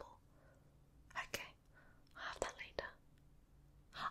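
Two brief, soft whispers from a woman close to the microphone, about a second in and again around two and a half seconds in, with near quiet between them.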